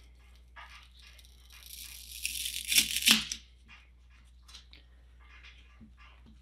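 X-Acto craft knife slicing through cured expanding-foam gap filler: a dry, crunchy scraping rasp about two seconds in, ending in a couple of sharper scrapes around three seconds as the cut goes through, with faint small ticks of the blade and foam before and after.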